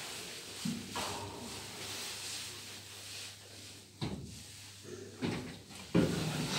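A 1996 KONE traction elevator car arriving at the landing with a low steady hum, then a click about four seconds in and another about a second later as it stops and the door lock releases. A loud clack at the very end as the swing landing door is pulled open by its handle.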